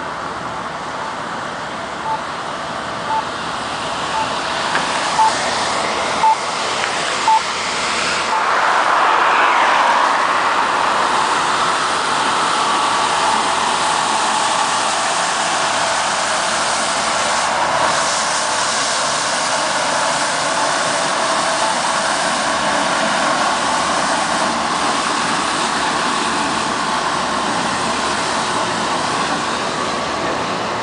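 A truck's engine and machinery running close by, a steady roar that swells loud about eight seconds in and holds, over street traffic noise. Before it, short high electronic beeps repeat about once a second for several seconds.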